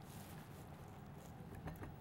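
Quiet stirring of thick guava syrup in a small saucepan with a spatula, with a few soft clicks near the end.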